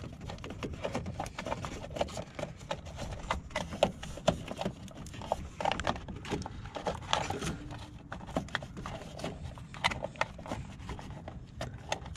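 Irregular light plastic clicks and scrapes as fingers press on and work at the latch of a plastic relay-box cover in a Nissan Versa's engine bay, releasing it.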